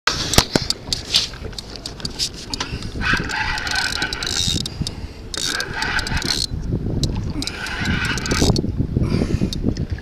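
A fishing reel whirring in three short bursts while a hooked fish is played from the kayak, over a steady low rumble of wind and water. Scraping and clicks of clothing rubbing against the camera come first.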